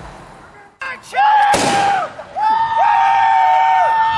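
Reenactors' long, high, held war cries, several voices overlapping, with a single black-powder musket shot about a second and a half in.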